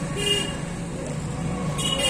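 Steady low traffic hum with two short vehicle-horn toots, one just after the start and one at the end.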